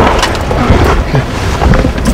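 Loud wind buffeting the microphone: a rough, low rumble with irregular gusty pops.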